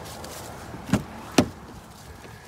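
Rear passenger door of a 2021 Chevrolet Blazer being unlatched and opened: two sharp clicks from the handle and latch about half a second apart, the second louder.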